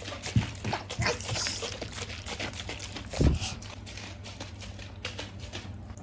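A child shaking a plastic water tumbler that holds water: irregular knocks and sloshing, with the strongest knock about three seconds in. A steady low hum runs underneath.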